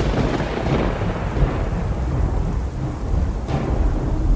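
Thunder sound effect: a crash at the start that fades into a low rolling rumble with a rain-like hiss, and a brighter burst near the end.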